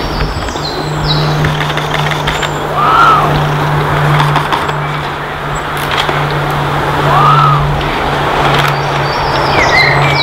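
Bird calls over a steady low hum and background noise: a clear arched call about three seconds in and again about four seconds later, with fainter high chirps near the end.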